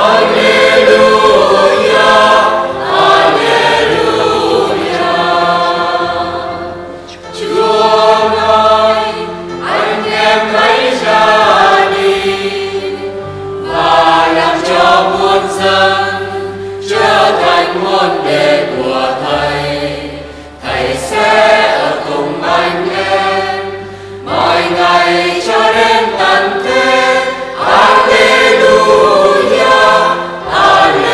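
Mixed church choir singing in several parts with electronic keyboard accompaniment holding low sustained notes, in phrases with short breaths between them: the acclamation sung before the Gospel at Mass.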